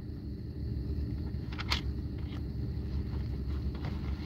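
Steady low hum and rumble inside a car's cabin, with one short click about halfway through.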